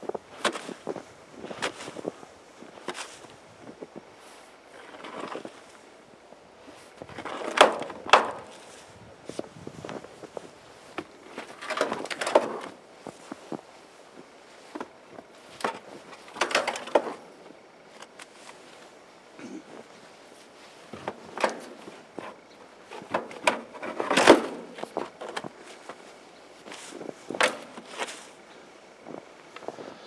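Snow being scraped and shoved with a long-handled tool, with boots crunching in the snow, in uneven strokes every second or two.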